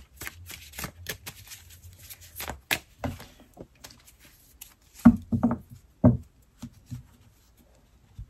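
A deck of tarot cards shuffled by hand: a quick run of crisp card flicks and riffles, then a few louder knocks of cards and hands on the table about five to six seconds in.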